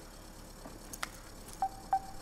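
Smartphone keypad tones as a number is tapped in: a faint click about a second in, then two short beeps near the end.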